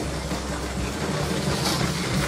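Motorised LEGO high-speed passenger train running along plastic track under the layout: a steady whir of its motor and wheels.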